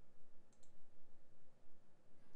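Faint computer mouse-button clicks, a quick pair about half a second in, over low background hiss.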